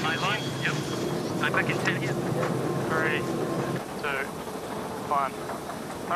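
Steady rushing noise with a faint hum, over which short, indistinct voice calls come and go. The low rush drops away abruptly about four seconds in.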